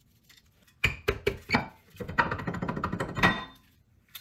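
Brake rotor being worked off a car's rear wheel hub: a few sharp metal knocks and clanks about a second in, then a longer scraping rattle of metal on metal.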